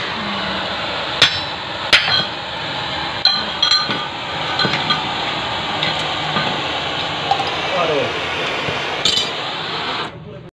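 Oxy-fuel gas cutting torch hissing steadily, broken by several sharp metallic clinks and knocks, the strongest about a second and two seconds in, more between three and five seconds and again near nine seconds.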